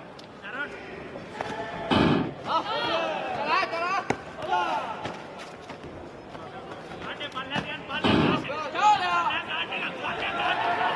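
Two taekwondo kicks thudding against an electronic body protector, about two seconds in and again about eight seconds in, each a point-scoring body shot. Shouting voices follow each one.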